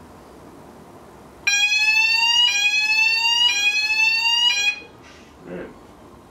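Electronic fire alarm sounding: a loud, shrill tone repeating in slow upward sweeps of about a second each. It starts about a second and a half in and cuts off after about three seconds.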